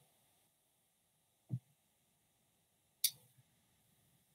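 Near silence, broken by a soft low thump about a second and a half in and a short, sharp click about three seconds in.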